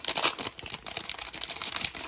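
Foil wrapper of a 2023 Panini Prizm WWE trading-card pack crinkling as hands work it open, a dense run of small irregular crackles.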